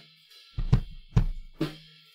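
Playback of a recorded drum kit: several kick drum hits with a strong, full low end, with cymbal and hi-hat hiss above. The kick-in and kick-out microphone tracks have just been brought into phase by an automatic phase rotation, so the kick's bottom end is restored.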